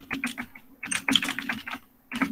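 Computer keyboard keys clicking in quick succession as a short phrase is typed: about a dozen keystrokes in two runs, with a brief pause about half a second in.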